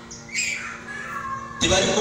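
A preacher's voice over a PA loudspeaker, gliding and strained, then rising to a loud shout about one and a half seconds in. A steady low electrical hum runs beneath until the shout.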